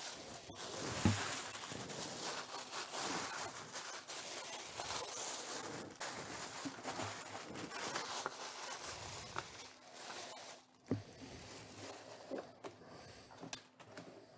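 Tissue paper rustling and crinkling as hands work it inside a cardboard jersey box, with a couple of dull knocks from handling the box, about a second in and again near the end.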